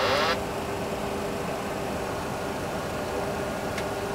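Boeing 737 flight simulator's autopilot-disconnect warning, a repeating warbling wail, cuts off about a third of a second in. Then comes the simulator's steady engine and airflow sound with a faint steady hum.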